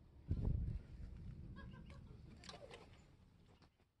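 Glass shop door pushed open by its push bar, with a low thump about half a second in, then quieter handling rustle and a few faint high chirps.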